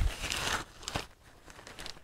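Tent rainfly fabric rustling and crinkling as it is handled by hand, loudest in the first half second, with a light tap about a second in.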